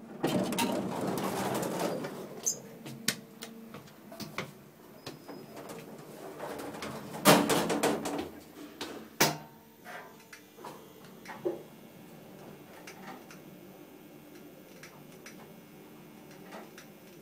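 Inside a moving Otis traction elevator car: rustling and sharp clicks in the first half, then a faint, steady low hum as the car runs between floors.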